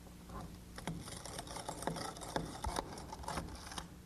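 A long wood screw being driven by hand with a screwdriver through a door jamb into the wall framing, to pull the jamb tight and take out the door's sag. About a second in, a quick run of irregular clicks and creaks begins as the screw bites into the wood, and it eases off near the end.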